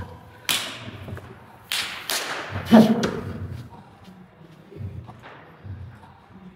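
A few short, sharp swishing sounds, then soft low thuds near the end, as a lifter moves about and sits down on a weight bench.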